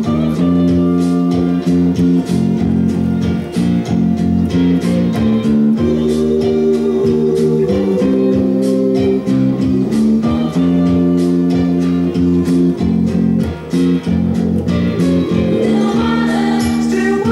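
A four-string electric bass played along to a soul recording, in an instrumental stretch with guitar and band and a steady, rhythmic bass line.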